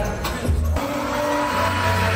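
Recorded music for a stage dance show, played through a hall's sound system, with an abrupt switch to a new passage about three-quarters of a second in.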